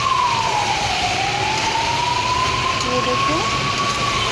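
A siren wailing in one high tone that slides slowly down and back up over a few seconds, loud over the sizzle of potatoes and pointed gourd frying in a wok as they are stirred.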